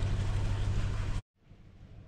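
A steady low rumble with hiss cuts off abruptly about a second in, then comes back faintly and slowly grows louder.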